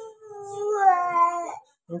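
A young child's long wordless vocal sound: one held, high note of about a second and a half that sinks slightly in pitch.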